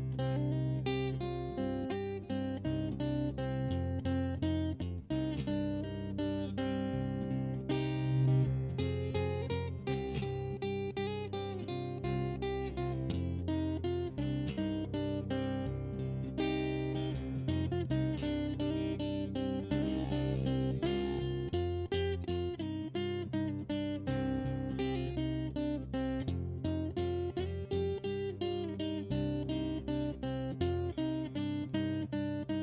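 Epiphone acoustic guitar fingerpicked in a dark folk blues style: a continuous stream of plucked notes over a repeating bass line, with no singing.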